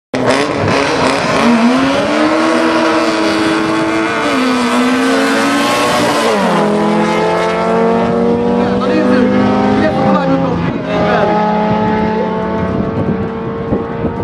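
Two drag-racing hatchbacks, a Honda Civic and an Opel Corsa, accelerating hard from the start line. The engine note climbs and drops sharply three times, about four and a half, six and ten seconds in, as the cars change up through the gears.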